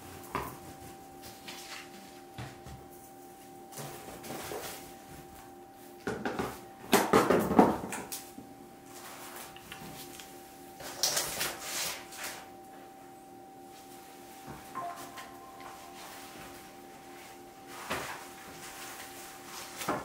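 Handling noises as a plastic tarp and cardboard are moved about: rustling and knocks in uneven bursts, the loudest about six to eight seconds in and again about eleven seconds in, over a faint steady hum.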